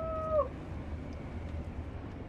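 Steady low engine and road rumble inside the cabin of a Scania K410IB double-decker coach. Over the first half-second a short, steady whine-like tone slides down and stops.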